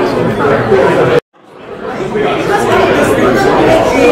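Indistinct chatter of many people talking in a large room. About a second in it cuts out abruptly, then fades back up within about a second.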